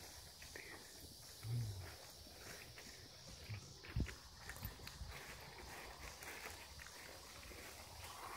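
Faint hoof steps of a young foal walking on a grassy dirt path, with a soft thump about four seconds in.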